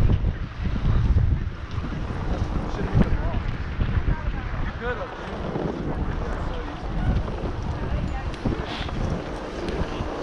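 Wind buffeting the microphone of a camera carried downhill on skis, a continuous low rumble, with skis sliding over packed snow.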